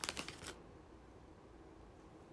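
A short burst of crinkly rustling in the first half second, as a snack packet is handled while a piece is taken out; after that only faint room hum.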